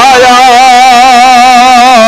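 A voice in a Sindhi naat holding one long sung note with a steady vibrato, over a constant low drone.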